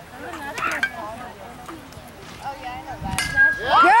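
Softball bat striking the ball about three seconds in: a single sharp crack with a brief ring. Spectators' voices are heard throughout, and a loud, drawn-out cheer of "yeah" follows the hit.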